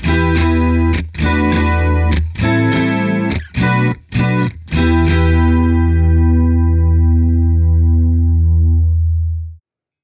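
Electric guitar (Fender Stratocaster) played through a Landscape Angel Chorus AGC1 chorus pedal with the effect on. It plays a series of short, choppy chords, then one chord held for about five seconds that wavers slowly with the chorus, and it cuts off suddenly shortly before the end.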